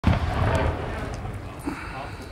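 People's voices, faint, over a low rumble that fades away.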